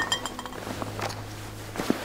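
Drinking vessels clinking and knocking as they are handled: a short ringing clink at the start, a few light knocks, and a sharper knock near the end, over a steady low hum.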